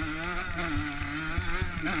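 Motocross bike engine pulling under throttle at a fairly steady high pitch, with brief dips in revs about halfway through and near the end.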